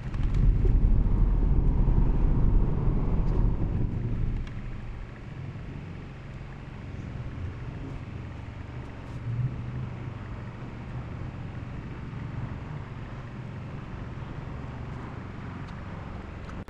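Road and traffic noise heard from inside a Tesla Model 3's cabin, with no engine note. A low rumble is loudest for about the first four seconds, then settles into a steadier, quieter hum.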